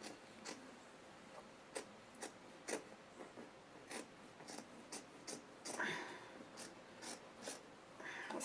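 Fabric scissors snipping through cotton fabric, a run of faint, irregular snips about two a second.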